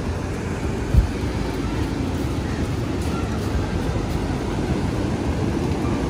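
Steady low rumble of wind and sea surf on a handheld phone microphone, with a single thump about a second in.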